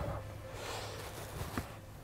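Quiet interior with faint rustling as a person settles onto a car's leather rear seat, and a soft click about a second and a half in.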